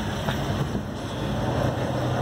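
Steady low background rumble with a faint hum, with no distinct events standing out.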